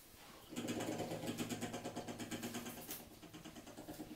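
An engine running with a low hum and a rapid, even pulse, starting about half a second in and slowly fading.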